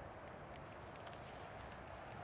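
Faint, steady outdoor background noise with a few light, scattered ticks.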